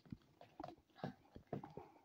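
Faint, scattered light taps and clicks of small plastic toy figures being moved by hand against a plastic surface.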